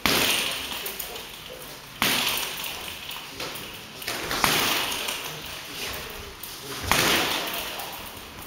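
Boxing gloves landing punches during sparring: four sharp hits roughly two seconds apart, each trailing off in a ringing echo.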